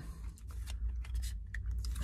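Pokémon trading cards being handled and flipped through by hand: a quick run of light clicks and rustles as one card is slid off the stack and the next is brought to the front.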